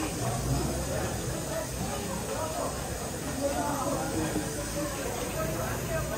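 Indistinct background voices over a steady hiss.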